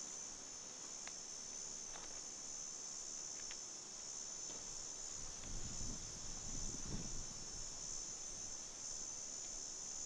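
Steady, high-pitched chorus of insects trilling without a break, with a few faint low rumbles near the middle.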